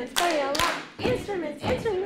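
A group of adults clapping hands in a steady rhythm, about two claps a second, with voices over it.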